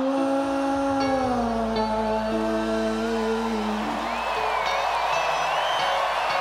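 Live rock band playing an instrumental passage between verses: held notes falling in steps. From about four seconds in, crowd noise swells under the music, with a wavering high whistle or whoop above it.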